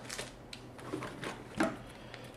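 Faint handling noise: soft rustling and a few light ticks from hands reaching for a cloth accessory bag in a cardboard box, the loudest tick about one and a half seconds in.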